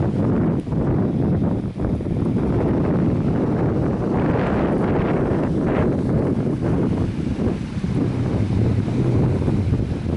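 Wind buffeting the camera's microphone: a loud, steady low rumble, with a brighter gusty stretch around the middle.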